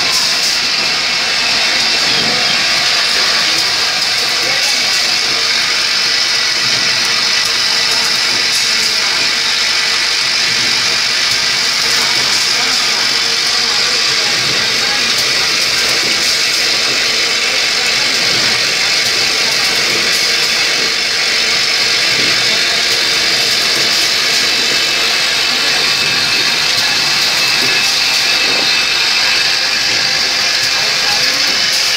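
Automated lighter assembly machinery running: a steady hiss with many small clicks and rattles, from a vibratory bowl feeder shaking lighter parts along its track and from the pneumatic press stations.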